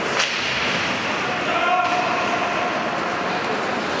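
Ice hockey being played in an indoor rink: a single sharp crack from play on the ice about a quarter second in, over steady chatter and calls from the crowd and players.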